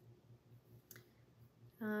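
Quiet room tone with a single faint, short click about a second in.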